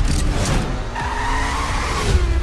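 Car engine revving, with tyres squealing from about a second in, over a deep bass rumble of trailer sound design; two sharp hits in the first half-second.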